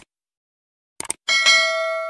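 Short click sound effects, one at the start and a quick double click about a second in, then a bell ding that rings on with several steady tones and fades slowly: the sound effects of a subscribe-button and notification-bell animation.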